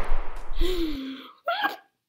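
The dying tail of a gunshot sound effect: noise and low rumble fading over the first second, with a short cry of falling pitch under it. A brief hiccup-like vocal yelp follows about a second and a half in.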